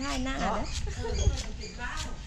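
People talking, along with a knife tapping through green onions onto a wooden chopping block.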